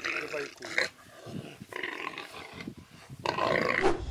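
A warthog's distress cries and a leopard's growls as the leopard grapples with it, coming in short, irregular outbursts.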